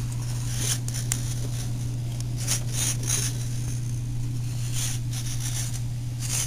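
Several brief high whirs from the model's servos driving the rudder and tail wheel, over a steady low hum.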